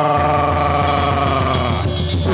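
Sundanese gamelan music accompanying a wayang golek performance: one long, steady melodic note with a slight waver, fading out near the end, over a low steady tone.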